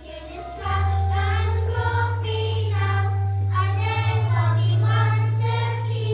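A group of young children singing together as a choir, getting louder about half a second in, over an accompaniment of low held bass notes.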